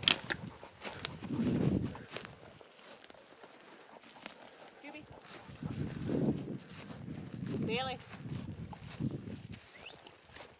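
Footsteps and snapping twigs through dry forest undergrowth, with sharp cracks scattered throughout and several louder swells of brushing and trampling. About three-quarters of the way through comes one brief wavering high-pitched call.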